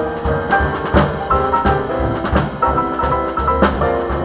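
Jazz big band playing: an alto saxophone line over drum kit, with sharp drum-and-cymbal hits about a second in and near the end.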